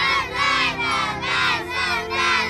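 A group of children singing loudly together in unison over backing music, in short phrases about half a second apart.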